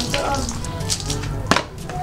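Background music with a steady low bass line, and one sharp knock about one and a half seconds in.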